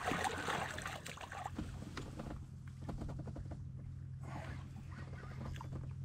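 Water splashing at the side of a small boat as a big ling is hauled up to the surface, loudest in the first second or so and again briefly about four seconds in, with scattered light knocks and clicks.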